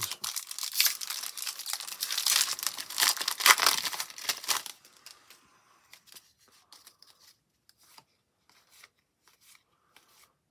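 A trading-card pack wrapper being torn open and crinkled for about the first five seconds. After that come only faint, scattered clicks as the stack of cards from the pack is handled.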